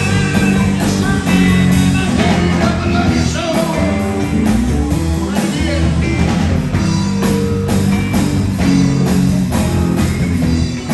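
Live rock band playing: electric guitars, electric bass and drum kit, the drums keeping a steady beat.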